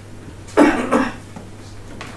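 A person coughs twice in quick succession, just over half a second in, against a steady low hum in a small room.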